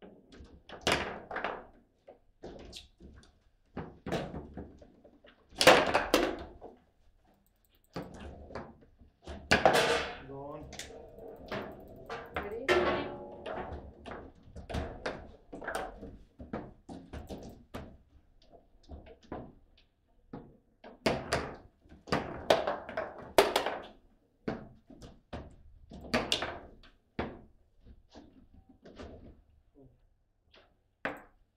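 Table football play: sharp knocks and thunks of the hard ball being struck by the rod figures and hitting the table walls, coming in irregular flurries. One shot goes into the goal.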